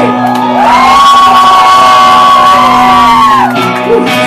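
Korean punk band playing live with accordion and electric bass: the lead singer holds one long shouted note for about three seconds, sliding up into it and dropping off near the end, over a steady held chord from the band.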